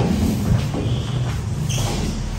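Dry-erase marker writing on a whiteboard, giving a couple of short squeaks about a second in and near the end, over a steady low room hum and shuffling.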